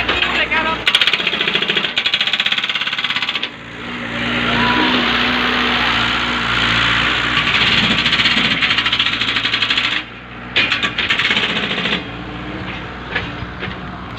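Jackhammer hammering in long bursts of rapid strokes, stopping and restarting: a short burst, a long run of about six seconds, then a brief burst near the end.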